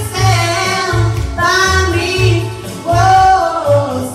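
Live dance band playing a pop song: a high sung vocal line over bass notes that change about every half second.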